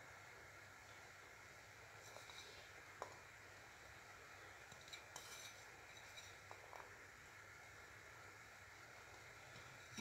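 Near silence: faint room tone with a few soft, light clicks as pieces of candied fruit are handled from a plate onto rice in an aluminium pot.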